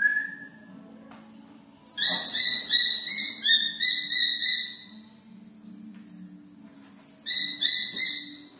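A small hawk calling: a rapid run of shrill, repeated notes for about three seconds, then another short run near the end.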